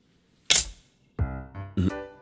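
A single sharp snap, such as a shogi piece set down hard on a wooden board, about half a second in. Background music with short pitched notes starts just after a second in.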